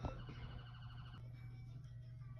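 Faint emergency siren: a rising wail that turns into a fast pulsing warble and fades out about a second in, over a low steady hum.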